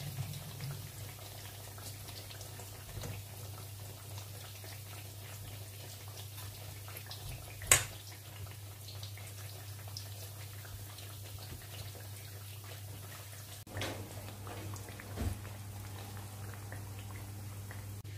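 Quiet kitchen room tone with a steady low hum and faint handling sounds as a sheet of brick pastry is filled with a spoon and folded by hand. One sharp click, the loudest sound, comes about eight seconds in.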